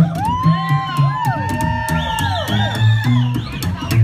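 Upright double bass played pizzicato, slapped rockabilly style: a steady run of low plucked notes with sharp percussive slap clicks. Over it, audience members let out several long whoops that rise and fall in pitch.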